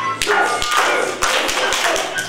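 Young children and a teacher clapping their hands during a sung action song, about five uneven claps over the singing.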